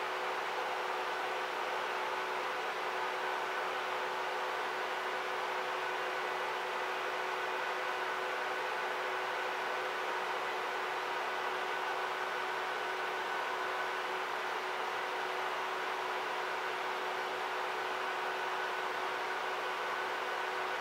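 A steady mechanical hum and hiss, like fan noise, with several faint steady high tones running through it and no change at all.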